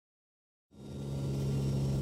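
Silence, then the steady drone of a turboprop aircraft's engines and propellers, heard from inside the cabin, fades in about two-thirds of a second in.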